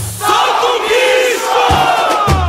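Samba-enredo recording in which the drums and bass drop out and a large chorus of many voices sings on its own, with the percussion coming back in near the end.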